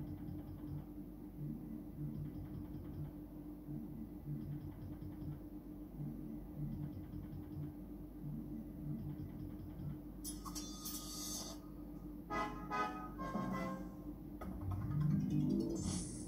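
Electronic game sounds from a Merkur Magie slot machine running its Gladiators game: a low looping tune with a short beat about twice a second while the reels spin. About ten seconds in there is a bright burst of effects, then a run of chimes and a rising tone near the end as a winning line comes up.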